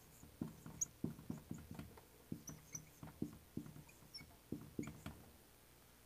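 Dry-erase marker writing on a whiteboard: a quick run of short strokes, two or three a second, that stops about five seconds in.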